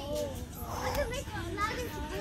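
Background voices, like children playing, with no clear words.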